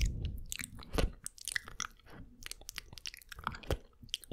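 Close-miked wet mouth sounds: licking, tongue clicks and lip smacks right against the grille of a Blue Yeti microphone, an uneven stream of quick wet clicks. Low thumps mark the start and about a second in.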